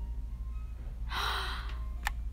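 A woman's short, breathy sigh about a second in, over a steady low hum.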